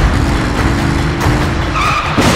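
A car's engine running hard as it speeds past, its pitch wavering, followed by a brief high tire squeal near the end.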